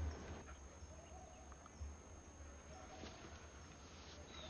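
Faint outdoor ambience: a steady low rumble with a few faint, short bird chirps.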